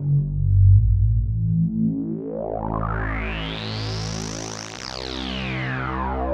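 Synthesized pulse-wave tones with a slowly wavering pulse width, stepping through a short repeating pattern of notes, played through a resonant low-pass filter. The filter sweeps slowly up to a bright peak about four seconds in, then back down.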